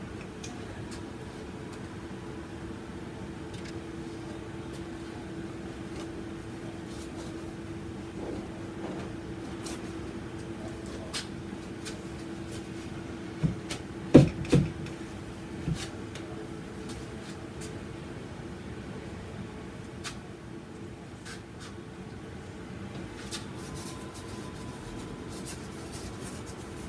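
Steady low room hum, with scattered light taps as a painting tool is worked against a large acrylic canvas; a few louder knocks come about fourteen seconds in.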